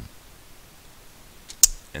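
A quiet pause with low room noise, broken near the end by a faint click and then a single sharp, loud click.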